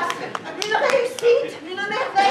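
Scattered audience clapping, a few sharp claps at uneven spacing, with voices over it.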